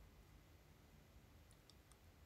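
Near silence: room tone, with three or four faint, light clicks in quick succession near the end.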